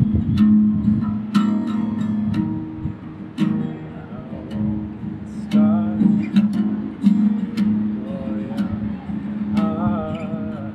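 Acoustic guitar strummed in a slow, uneven rhythm of chord strokes, with a voice singing short phrases over it a few times.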